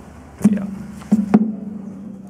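Guitar strings struck three times, about half a second, a second and a second and a half in, with a low note ringing on after each stroke.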